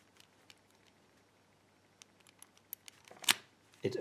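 Letter-combination padlock being worked by hand: a few faint clicks from its wheels, then one sharp, loud metallic click about three-quarters of the way through as the shackle is pulled open on the right code.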